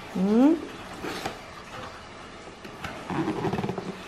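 A short rising vocal sound just after the start, then soft rustling and a few light clicks of a cardboard gift box being slid open, with a louder rustle about three seconds in.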